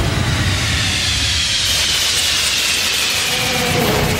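Title-card whoosh sound effect: a loud, steady rushing hiss with a faint tone sliding slowly downward through it, and a lower tone coming in near the end.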